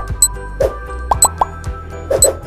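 Upbeat countdown-timer music with a steady beat and sharp ticks, mixed with short cartoonish plop sound effects, three of them in quick succession about halfway through.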